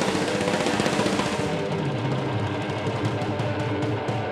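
Rock band playing live with electric guitars, bass and drum kit. In the second half the drums break into a run of quick hits.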